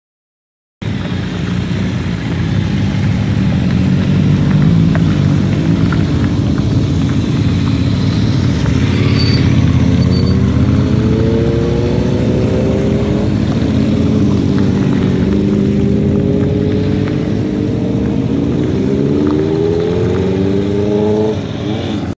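A group of motorcycles riding past, engines running loud and steady. The sound starts suddenly about a second in, with engine notes rising as bikes accelerate, around the middle and again near the end.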